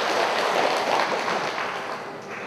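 Audience applause, a dense patter of many hands clapping that fades out near the end.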